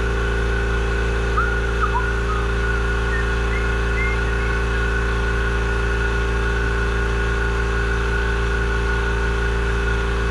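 Steady, unchanging drone of running shop machinery, with a couple of small clicks about one and a half and two seconds in.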